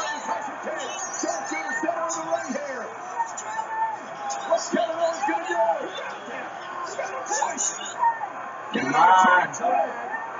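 Wrestling broadcast playing on a TV: commentators talking steadily, with a louder burst of voice about nine seconds in.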